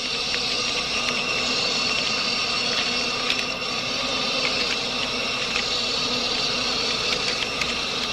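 Dense, steady buzzing of a swarm of locusts, the whir of many wings, with a few faint high steady tones running through it.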